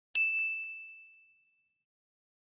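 Notification-bell ding sound effect: one sharp strike that rings out on a single high tone and fades over about a second and a half.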